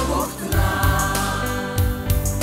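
A song sung by a group of voices together over a backing track with a steady bass, the voices holding a long note through the second half.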